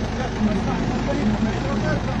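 Motor vehicle engine running steadily at low revs: an even, low hum with a faint steady tone.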